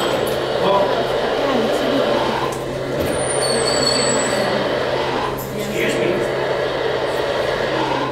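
Many children talking at once in a room, over a steady low electrical hum.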